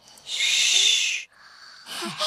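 A drawn-out hushing "shh", about a second long, keeping quiet for a sleeping baby.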